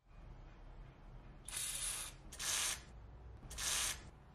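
WD-40 aerosol can sprayed through its red straw onto the rusted jack, in three short hissing bursts of about half a second each, the last near the end.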